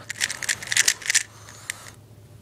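Magnetic 3x3 speed cube, missing one corner piece, turned fast by hand: a rapid run of plastic clicks and clacks for about a second as the layers snap round, then a single click near the end.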